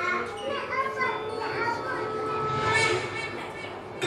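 Indistinct voices of children and adults talking over one another.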